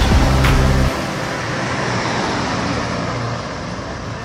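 Background music ending about a second in, followed by steady street traffic noise with a car passing.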